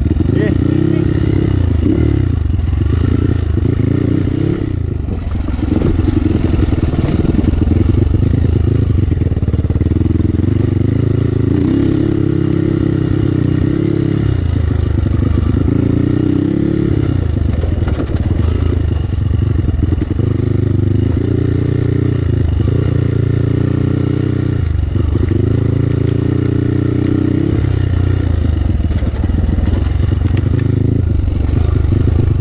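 Kawasaki KLX 140G dirt bike's single-cylinder four-stroke engine running under load on a trail, revs rising and falling over and over as the throttle is opened and closed, with a brief drop about five seconds in.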